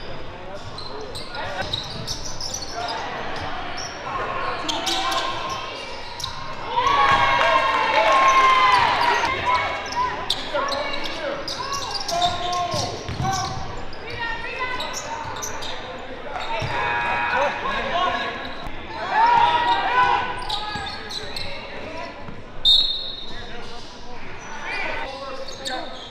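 A basketball bouncing on a hardwood gym floor, with voices from players and spectators ringing in the large gym. The voices grow loud twice, at about 7 to 10 seconds in and again at about 19 to 20 seconds.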